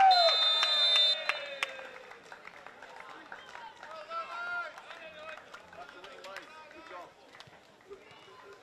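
Referee's whistle blown in a loud high blast that stops about a second in, the full-time whistle ending the match, over a man's long call falling in pitch. After it, quieter voices of players and spectators around the pitch.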